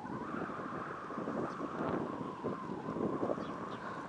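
Steady wind buffeting the microphone.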